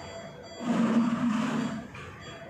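A person's drawn-out groan, about a second long, starting about half a second in.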